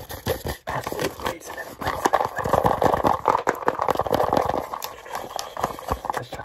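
Fast, irregular fingertip tapping and scratching on a cardboard razor-cartridge box and its plastic cartridge tray. A busier stretch of scratching and rustling comes through the middle.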